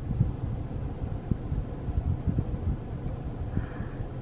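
Low, uneven rumble of background noise inside a car cabin, with irregular soft low thuds.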